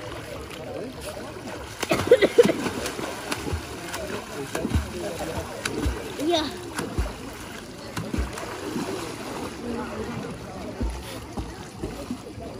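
Swimming-pool water splashing as swimmers thrash and plunge at the surface, loudest about two seconds in and again around six seconds, with voices in the pool. A few short low thumps come later on.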